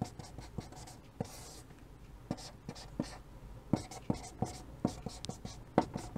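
Chalk writing on a chalkboard: a string of short sharp taps and brief scratches as characters are written and circled.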